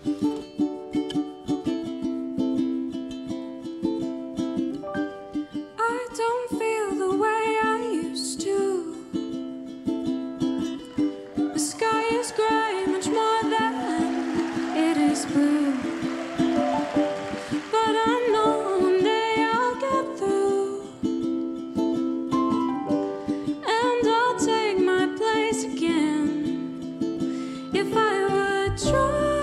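A ukulele plays alone at first. About six seconds in, a woman's singing voice joins it, performing a slow song.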